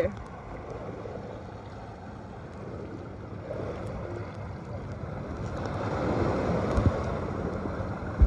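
Muffled rush of wind and water on a boat, an even noise that slowly grows louder, with faint voices in the background.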